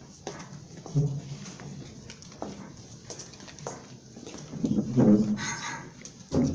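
Room noise of scattered knocks and clicks, with brief indistinct voice-like sounds about a second in and louder ones around five seconds in.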